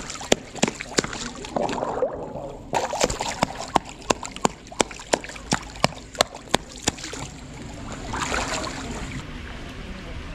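Sea otter banging an oyster shell against the pool edge to crack it open: a run of sharp hard clacks, about three a second, that stops about seven seconds in. Splashing and sloshing water throughout, swelling near the end.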